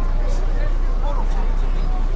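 Open-top tour bus engine running with a steady low rumble, under indistinct chatter from people nearby.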